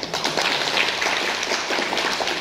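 Audience applauding, many hands clapping at once, breaking out suddenly at the start.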